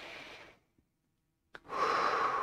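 A man's deep breath taken close to a lapel microphone, part of a guided breathing exercise. A soft breath at the start, a short silence, then a loud, long breath from about a second and a half in, starting with a small mouth click.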